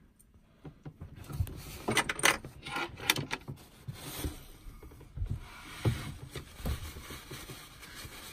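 Irregular metallic clicks and clinks of loose metal parts and tools being handled, a scatter of short, sharp taps that are loudest about two and three seconds in.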